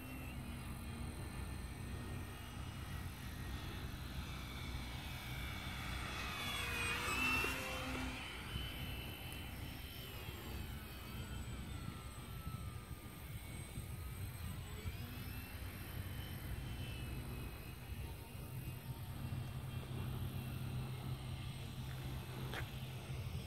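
Electric motor and propeller whine of an E-flite P-51 Mustang RC model plane flying past. It grows loudest as the plane passes about seven seconds in, then the whine drops in pitch as it moves away, over a steady low rumble of wind on the microphone.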